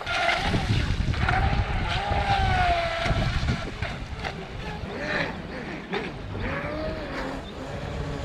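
Brushless motor of an Atomik Barbwire XL2 RC speed boat whining across choppy water, its pitch rising and falling in short glides that break up in the second half as the LiPo low-voltage cutoff cuts back the power. Wind rumbles on the microphone underneath.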